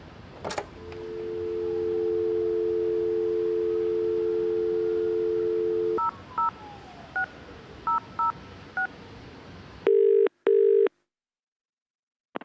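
Telephone line sounds: a click, then a steady two-tone dial tone for about five seconds. Six touch-tone keypresses beep as a number is dialled, followed by a double burst of ringing tone, and then the line cuts to silence.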